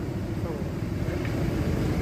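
Steady low rumble of background street traffic, with no sudden events.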